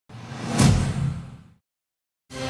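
Intro sound effect: a whoosh that swells to a hit just over half a second in, then fades away within about a second and a half.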